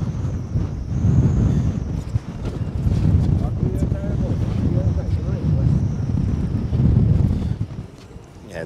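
Wind buffeting the microphone: a loud, uneven low rumble that swells and dips, with faint voices underneath.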